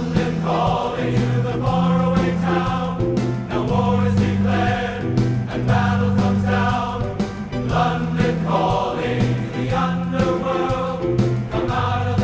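Large men's chorus singing a rock song with band accompaniment, drums keeping a steady beat under sustained bass notes.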